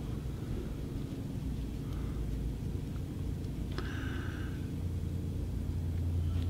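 Steady low background rumble of room noise, with two soft, brief rustles about two and four seconds in as fingers twist and wrap rabbit-foot dubbing onto the tying thread.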